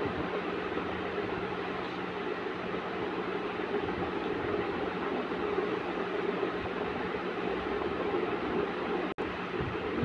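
Steady rushing background noise with a constant low hum, unchanging throughout; it drops out for an instant about nine seconds in.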